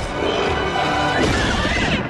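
Action-film sound mix: a film score playing under loud crashing and smashing impact effects from a creature fight.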